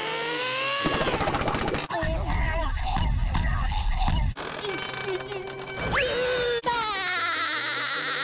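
Cartoon sound effects: a rising strained cry, then rapid, frantic scrubbing with a heavy low rumble for a few seconds. A long held scream follows, with a short rising whistle near six seconds in.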